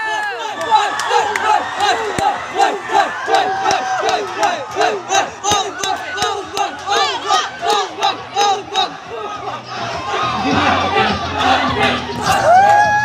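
An audience of students cheering with a rhythmic shouted chant and clapping, about two or three beats a second, loosening into scattered cheering about nine seconds in.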